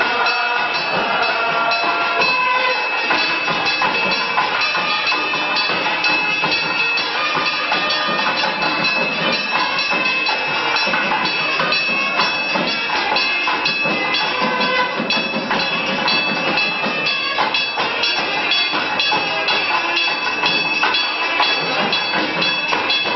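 Temple bells clanging in a rapid, steady rhythm with a sustained high ringing tone, mixed with temple music, as accompanies the waving of the lamp (arati) in Hindu temple worship.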